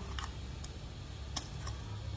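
A few light, scattered ticks and clicks as a thin metal rod pokes at the seal in the neck of a plastic engine-oil bottle, the sharpest click about one and a half seconds in, over a faint low hum.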